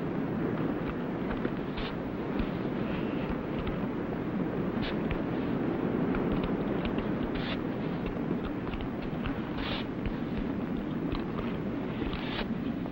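A shovel digging in sand, heard as a few short, irregular scrapes over a steady rushing background noise.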